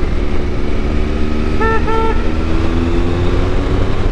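Motorcycle engine running at road speed under heavy wind rumble on the camera microphone, its note easing slightly lower. About a second and a half in, two short beeping tones sound one right after the other.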